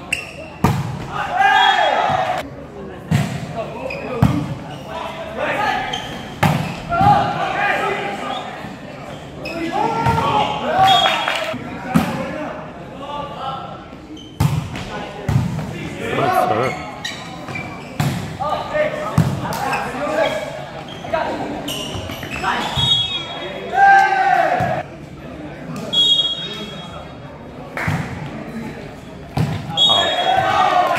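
Indoor volleyball play in a large gym hall: the ball being hit and bouncing with sharp, reverberant smacks at irregular moments, among the shouts and calls of players.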